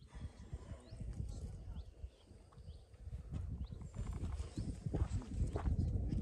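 Wind rumbling on the microphone outdoors, with a few faint bird chirps.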